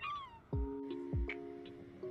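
A cat's short meow, falling in pitch, right at the start, over background music with steady tones and a regular kick-drum beat.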